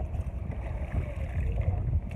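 Steady, gusting wind rumble on the microphone over water moving around a small boat.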